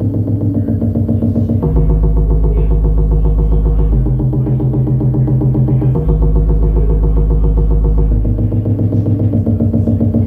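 Live electronic music from stage synthesizers: a pulsing, fast-repeating pattern over a deep bass line that moves to a new note about every two seconds.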